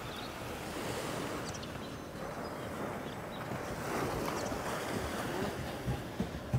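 Waves washing onto a sandy beach: a steady hiss of surf that swells about a second in and again around four seconds.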